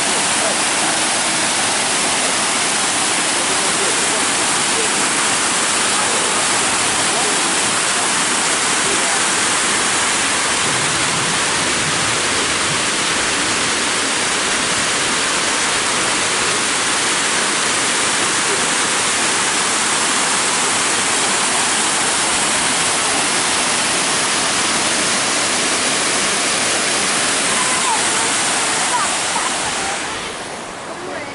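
Waterfall cascading over rocks close by: a loud, steady rush of water with no break.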